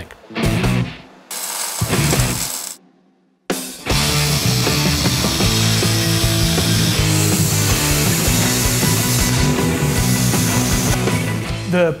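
Background music over power-tool metalwork: a few short, broken bursts of a tool in the first three seconds, a brief pause, then from about four seconds in a steady, loud power tool cutting or grinding steel.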